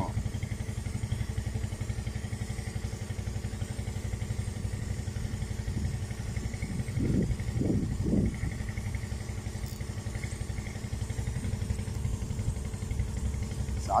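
A small engine running steadily with a low, even pulse, unchanging throughout. A faint voice is heard briefly about halfway through.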